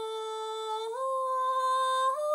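A singer's voice holds one long note of a Japanese min'yo folk song and steps up to a slightly higher held note about a second in. No shamisen is plucked during the note.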